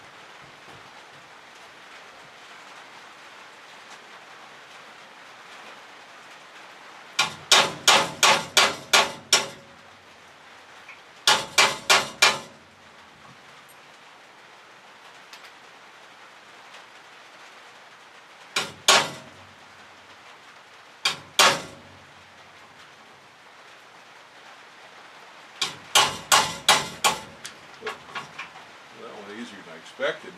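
Hammer blows on steel, driving out the roll pin that holds the threaded end on the sawmill carriage's stabilizer control rod. The blows come in quick runs of about seven sharp metal strikes, with shorter groups and pairs between them, and a last run near the end that trails off into lighter taps.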